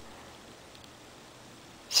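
Quiet pause holding only a faint, steady hiss of room tone, with a man's voice starting a word right at the end.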